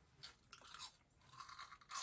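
Faint crunching as a person bites into and chews a small snack, in a few short, scattered crunches.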